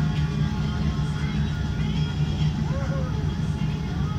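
Steady low cabin rumble of a Boeing 787-9 taxiing, heard from a window seat. Faint music and voices from the safety video play over the cabin speakers.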